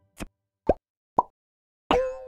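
Four short synthetic pops about half a second apart, the last one the loudest with a brief ringing tone after it: the sound effect of an animated logo appearing.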